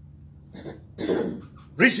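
A person coughs once, short and sharp, about a second in, over a steady low hum. Speech starts just before the end.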